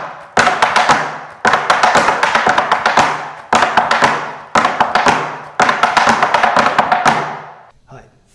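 Tap shoes' metal taps striking a wooden tap board in a run of pullbacks at speed: dense clusters of quick taps repeated about once a second, stopping near the end.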